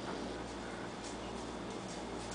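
Quiet, steady room tone and recording hiss with a faint low hum, with no distinct sound event.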